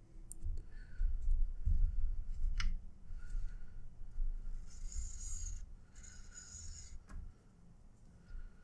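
Paracord being threaded and pulled through a bracelet weave on a jig, with a fid pushed through the knots: cord rubbing and rustling, low bumps from handling, and a couple of small sharp clicks.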